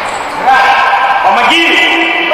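Shouting voices echoing in a large indoor sports hall during a futsal game, growing louder about half a second in.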